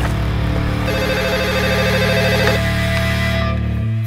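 A telephone ringing in one rapid warbling burst, about a second in, over a steady low drone of film score music.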